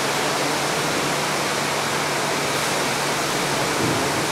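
Steady, even hiss of room noise with a faint low hum, from ceiling fans running in a hall.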